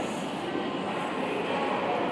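Steady background noise of a railway station ticket hall: an even hum with no single sound standing out.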